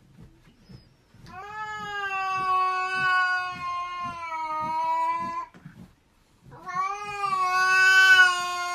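Cat yowling: two long, drawn-out calls, the first held about four seconds starting a second in, the second starting a little after the middle and still going at the end.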